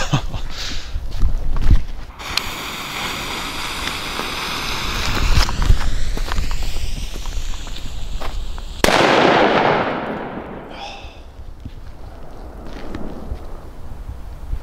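Funke Super Böller 2 firecracker: its lit fuse hisses steadily for about six seconds, then it goes off with a single sudden, loud bang about nine seconds in, the report dying away over a second or so. A couple of low thumps sound near the start.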